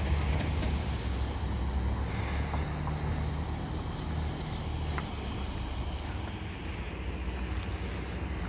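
Steady low rumble of a motor vehicle and road noise, with a few faint clicks about halfway through.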